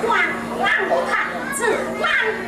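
Teochew opera stage dialogue: actors' high, sing-song voices speaking back and forth, with a steady low hum underneath.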